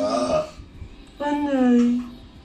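A voice making two drawn-out sounds, each about a second long, at a steady, slightly falling pitch, with a short quiet gap between them.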